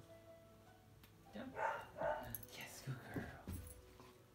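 A man's brief, unclear words about one and a half seconds in, over faint, steady background music.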